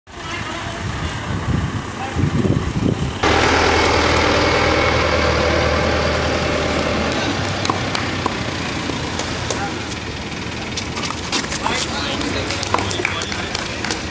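Outdoor voices, and from about three seconds in a vehicle engine running close by with a steady low hum, loud at first and slowly fading. Scattered sharp clicks toward the end.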